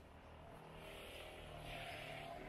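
Street traffic: a passing motor vehicle, its noise swelling over the two seconds.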